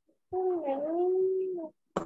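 A single drawn-out vocal call of about a second and a half that dips in pitch and then holds steady, followed by a sharp click at the very end.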